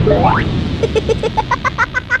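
Cartoon sound effects for an animated logo sting. A quick rising whistle-like glide comes first, then a fast run of short bouncy chirps, about seven a second, over a steady rushing noise.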